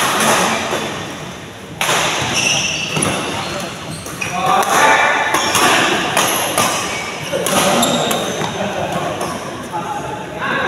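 Doubles badminton rally in a reverberant sports hall: repeated sharp racket strikes on the shuttlecock every second or so, with players' voices calling out.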